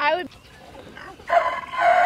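A rooster crowing: one long, steady call starting a little over a second in.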